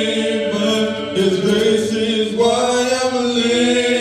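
Voices singing a slow hymn in long held notes, sung together in church.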